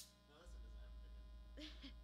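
Quiet stage between songs: a sharp click right at the start, then a steady low electrical hum from the amplifiers coming up about half a second in, with faint voices under it.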